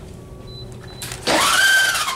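Dry-erase marker squeaking on a whiteboard: about a second in, a short scratchy rub, then a loud rising squeal held for about half a second.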